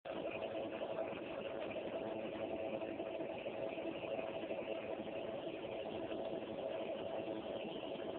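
Nebulizer's small air compressor running with a steady hum and hiss as it drives medicine mist through the tubing to the mouthpiece.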